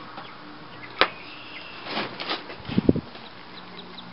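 Knocking and scraping from handling around a chicken pen: a sharp click about a second in, scratchy strokes, then a few dull thumps near the end, with faint chick peeps.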